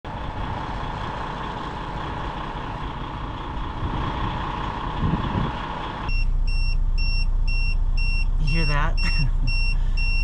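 For about six seconds an air pump runs steadily while a truck tire is filled. Then, inside the truck's cab, a diesel engine idles with a low hum while a warning beep sounds steadily, about every 0.6 s.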